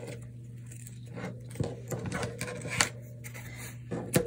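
Faint handling sounds of thread being drawn out by hand across a cutting mat, with a few light taps and rustles over a steady low hum.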